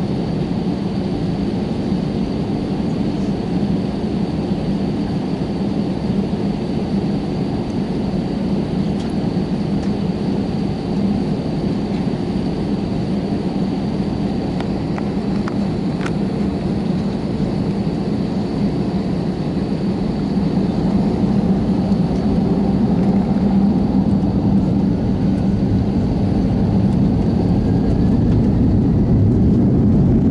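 Jet airliner's engines heard inside the cabin, a steady loud drone with a faint high whine, growing louder about two-thirds of the way in as the plane heads into its takeoff.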